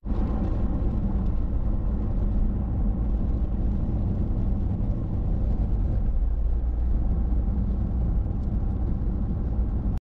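Car driving along with a steady low road and engine rumble that holds even throughout.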